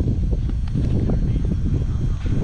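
Wind buffeting the microphone in a low, uneven rumble, with a few faint clicks over it.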